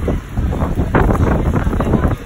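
Wind gusting on the microphone in a rainstorm, a heavy rumble with irregular spattering as rain hits a window sill.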